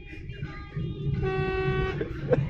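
Low rumble of a car driving, heard from inside the cabin, with a steady high tone held for most of a second in the second half.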